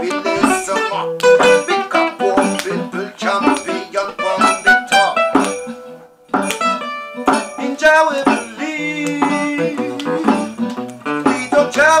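Acoustic guitar strumming a rhythmic chord pattern, with hand-drum percussion behind it; the playing drops out briefly about six seconds in, then resumes.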